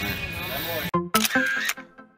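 Restaurant dining-room noise, cut off suddenly about a second in by a sharp camera-shutter click. A short run of plucked notes of background music follows.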